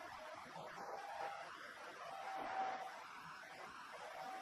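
Faint room noise: a low, even hiss, with a faint thin tone coming in briefly twice.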